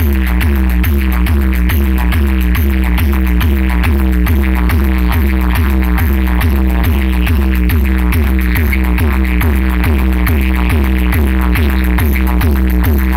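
EDM played very loud through a DJ sound system's speaker stack, with a heavy, continuous bass and a fast, evenly repeating beat.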